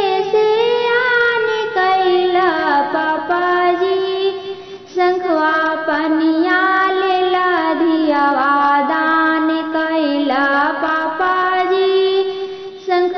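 A woman singing a Bhojpuri kanyadan wedding song (vivah geet) in a high voice, sliding between long held notes, with a brief pause for breath about five seconds in.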